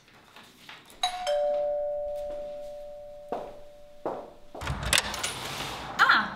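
Electric doorbell chime: a two-note ding-dong, high then low, ringing out for about two seconds before cutting off. Near the end a door is unlatched and opened with some clatter.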